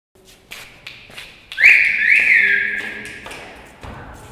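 A few light taps, then a loud, high whistle that swoops up and back down twice, holds on a lower note and fades out.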